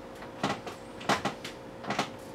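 Three sharp taps of a kitchen knife and bowls as strawberries are hulled and cut at a table, spread about half a second apart, over a faint steady hum.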